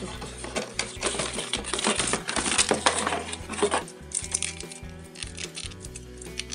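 Cardboard packaging rustling and clicking as a twist-tie wire is untwisted to free a small plastic RC car from its box insert, busiest in the first four seconds and lighter after, over background music.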